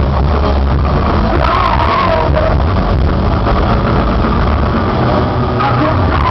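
Live heavy metal band playing loud, down-tuned distorted guitars, bass and drums in a dense, steady wall of sound, heard from within the crowd.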